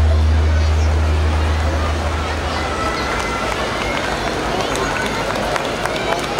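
A deep, steady bass tone from the stage PA loudspeakers, the last note of the performance's music, fading out over the first two to three seconds. Audience chatter carries on underneath and after it.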